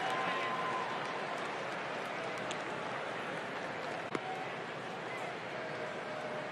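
Ballpark crowd murmur: a steady background of many indistinct voices from the stands between pitches, with one faint click about four seconds in.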